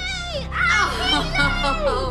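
Young children playing, their excited high-pitched voices and squeals gliding up and down, over background music.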